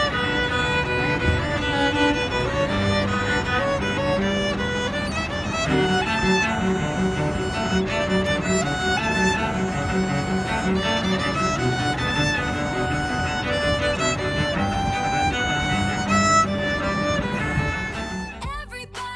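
Violin and cello duet: a bowed violin melody moving over sustained lower cello notes.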